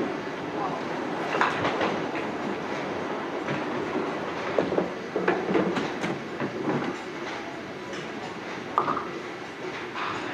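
Duckpin bowling alley din: a steady rumble of balls rolling down the wooden lanes, broken by scattered short clatters of pins and machinery.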